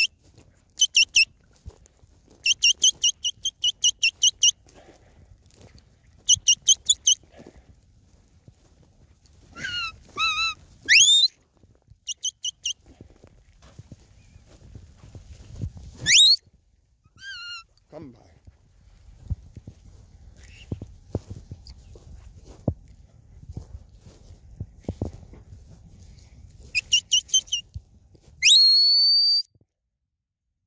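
Herding-dog whistle commands: several bursts of rapid warbling notes on one high pitch, mixed with a few sliding whistles that swoop up or down, the last one near the end rising and then held. A faint low rumble fills the gaps between whistles.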